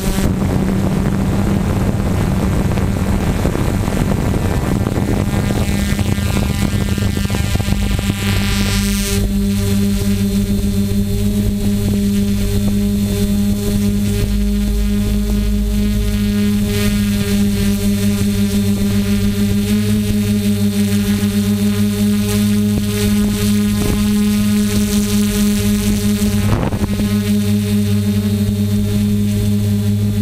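Multirotor drone's motors and propellers humming at a steady pitch, heard through its onboard camera, with a rushing noise over the hum for about the first nine seconds.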